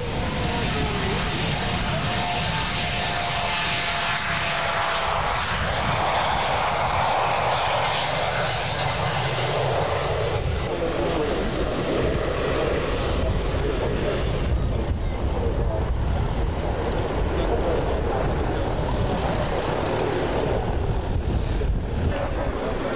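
Fokker VFW-614 jet airliner's two over-wing Rolls-Royce/SNECMA M45H turbofans at takeoff power as it lifts off and climbs away. The engines give a loud, steady rush of noise with a high whine that slowly falls in pitch and fades out about two-thirds of the way through.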